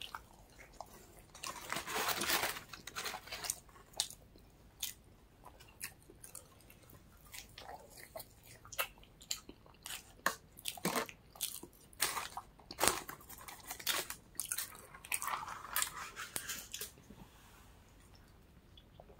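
A person chewing and biting into chicken wings and seasoned fries, with irregular small crunches and clicks scattered throughout.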